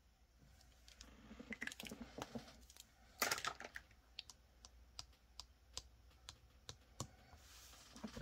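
Faint, irregular light clicks and taps with soft rustling, as a marker, a laminated savings-tracker card and a stack of banknotes are handled on a tabletop; the loudest tap comes about three seconds in.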